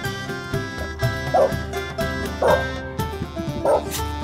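West Highland white terrier barking three times, about a second apart, over background music.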